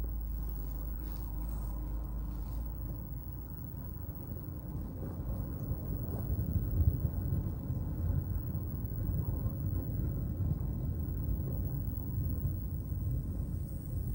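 Low, steady rumble of a car driving slowly, engine and tyres heard from inside the cabin.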